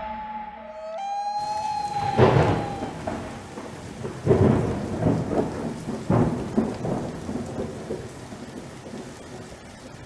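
Rain and thunder: a steady rain hiss starts suddenly about a second in, with several rolls of thunder over the next few seconds that grow quieter toward the end. A held musical note dies away in the first seconds.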